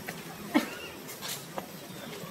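A macaque giving one short, sharp squeal about half a second in, rising quickly in pitch, with a couple of faint clicks after it.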